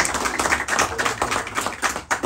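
Audience applauding: dense, steady clapping from a roomful of people as a plaque is presented.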